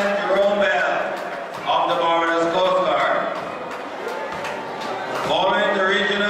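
A man speaking: the parade announcer's voice, naming a detachment's officers.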